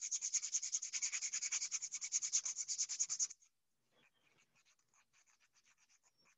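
Sandpaper rubbed by hand in quick back-and-forth strokes across a disc being prepared so that paint will adhere. The sanding stops abruptly a little past halfway, leaving only faint light ticks.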